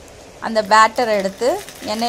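A woman's voice speaking, starting about half a second in; before that only a low steady background hum.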